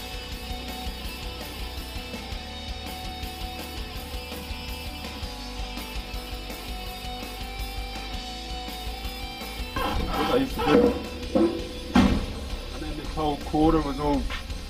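Background music with guitar; a man's voice comes in about ten seconds in.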